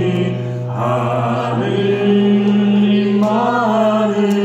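A man singing a Catholic hymn in long held notes, over a sustained low accompaniment tone.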